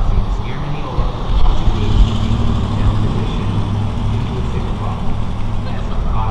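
Low steady hum of a vehicle running, setting in about two seconds in.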